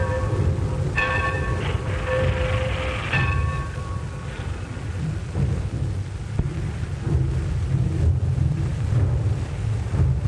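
Steam locomotive in a roundhouse: its bell rings a few strokes about a second apart and fades out around four seconds in, over a heavy, steady rumble and hiss of the engine that runs on throughout.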